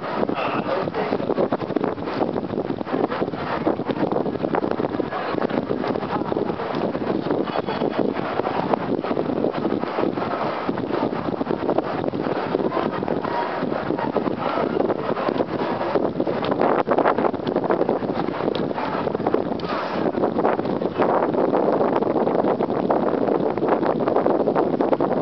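Steady loud rushing noise with no pitch to it, typical of wind buffeting a small camera microphone outdoors.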